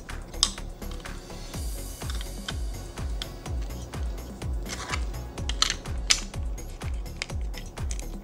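Plastic LEGO bricks and plates clicking and rattling as they are handled and pressed together, with a sharp click near the start and several more around five to six seconds in, over background music with a steady low beat.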